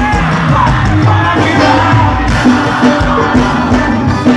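Live band music through a concert PA, loud and continuous with a heavy bass line, a singer's voice over it and crowd noise underneath.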